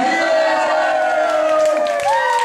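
Voices holding a long, drawn-out note that slides slowly down in pitch for nearly two seconds, with a second, lower held voice that stops shortly before the end.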